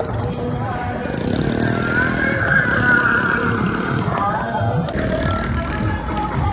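Voices shouting over motorcycle engines running alongside, with music from a truck-mounted DJ sound system.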